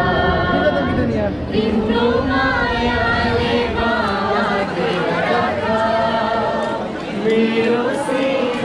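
A crowd of many voices singing together, long held notes gliding up and down, over crowd chatter.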